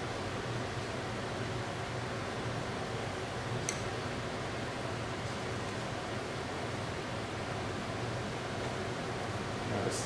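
Steady room noise with a low hum, and one small sharp click a little under four seconds in.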